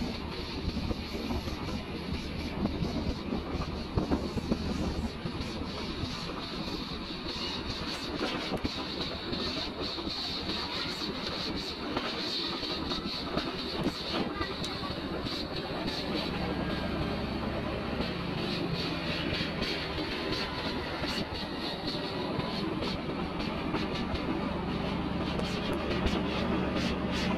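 Motorbike engine running steadily while riding, with wind and road noise; the engine note rises a little about two-thirds of the way through.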